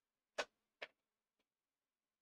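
Two sharp clicks about half a second apart, the first the louder, then a much fainter third click.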